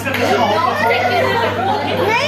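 Group chatter: several people talking over one another at once.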